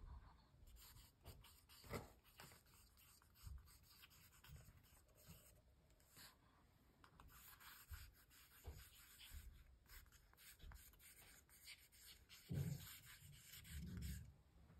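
Faint scratching of a pencil writing words by hand on a painted art-journal page, in many short strokes. A louder soft thump comes near the end.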